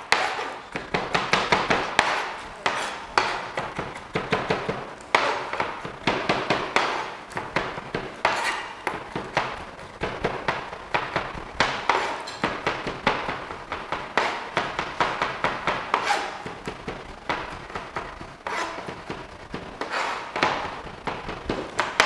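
Chef's knife chopping garlic on a cutting board: rapid, steady knocks of the blade on the board, several a second, running without a break.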